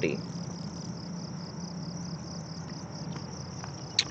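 A steady chorus of insects trilling, heard as an even, rapid, high-pitched pulsing that does not let up.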